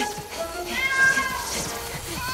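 Cartoon kitten meowing: one drawn-out mew about a second long, over background music.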